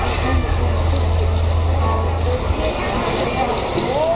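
Indistinct chatter of a crowd in a large arena hall, with a steady low hum that cuts off about two and a half seconds in.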